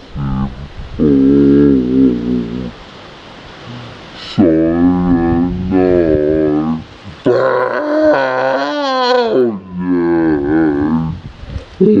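A person's voice singing wordless sustained notes a cappella, in several phrases with short pauses. A long, higher note about eight seconds in wavers with a strong vibrato.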